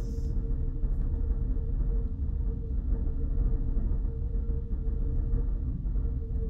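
Steady low rumble with a faint constant hum: room and microphone background noise during a pause in a lecture.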